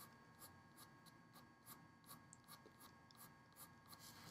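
Faint scratching of a graphite pencil on drawing paper, making quick short strokes at about four a second.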